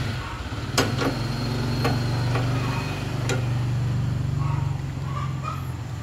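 A steady low mechanical hum, like an engine or machine running, with a few light clicks near the start and about three seconds in.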